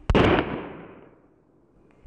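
A DFG Senior Bang firecracker, 0.5 g of flash powder, going off with a single sharp bang just after the start, the report fading away over about a second.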